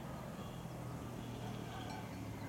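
Faint outdoor ambience: a steady low hum under light background noise.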